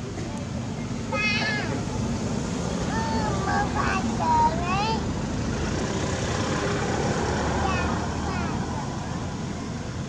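Infant macaque crying in short, high, wavering calls: a burst about a second in, then a run of rising and falling cries over the next few seconds, loudest near the middle, with fainter ones later. A steady low engine-like hum lies underneath.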